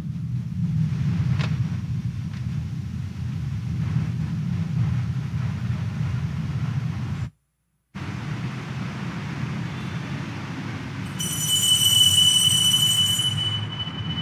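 Steady low rumble of church room noise picked up through the live-stream microphones, broken by a brief dropout to silence about seven seconds in. Near the end a high, steady ringing tone joins for about three seconds.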